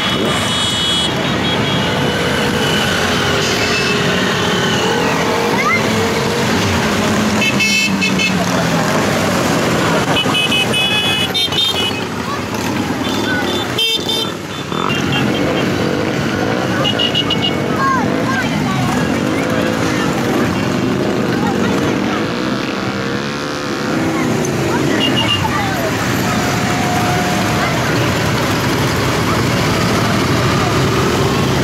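A procession of motorcycles passing at low speed, their engines running and rising and falling in pitch as riders throttle. Short horn toots sound several times through the procession.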